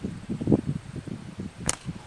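A lead ball shot from a flat-band slingshot, heard as one sharp crack near the end, over light wind noise.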